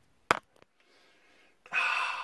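A single sharp click, then near the end a long, deep breath drawn in through the nose, a man smelling a cologne.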